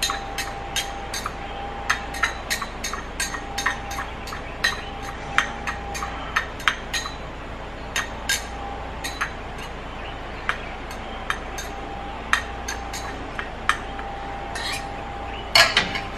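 A metal utensil stirring minced garlic, lemon zest and lemon juice in a small glass bowl, clinking against the glass: irregular sharp clinks, a few each second. A louder clatter comes near the end.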